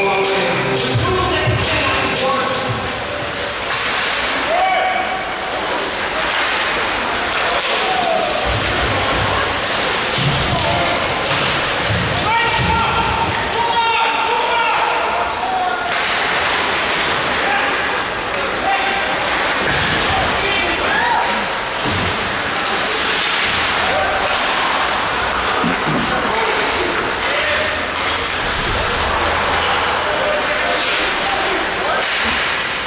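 Ice hockey play in a rink: knocks and thuds of puck, sticks and bodies against the boards, over a steady din of shouting voices.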